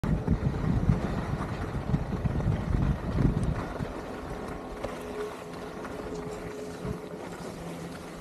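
Wind buffeting a helmet-mounted camera's microphone while skiing downhill on a groomed piste. It is loud and gusty for the first three or four seconds, then eases to a quieter, steadier rush.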